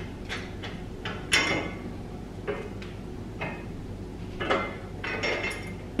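Scattered light metal clinks and knocks, the loudest a little over a second in: a tubular steel motorcycle crash bar and its mounting bolt being handled and shifted into line against the bike's frame.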